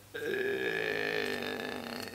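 A man's long drawn-out hesitation sound, an 'ähhh' held for nearly two seconds at a steady, slightly falling pitch.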